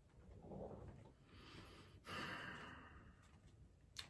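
Near silence with two faint, soft breaths, one about half a second in and a longer one about two seconds in.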